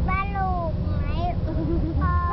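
A toddler's high voice singing, sliding down in pitch, in short phrases over the steady low rumble of a moving car's cabin.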